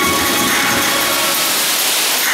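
Fountain water jets spraying and splashing back into the pool in a steady rushing hiss, while the show's music thins out between songs.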